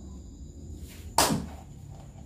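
A single quick swish and slap about a second in, as a playing card is flicked down onto the table.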